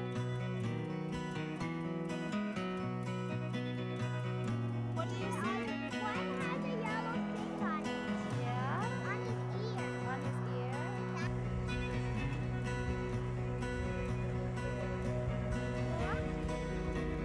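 Background music with a steady beat; over it, from about five to eleven seconds in, Roosevelt elk give a run of short, high, rising calls, with one more near the end.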